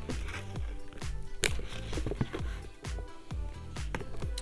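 Background music with a steady bass beat, with a few sharp clicks from the metal hardware of a leather bag strap being handled and clipped on.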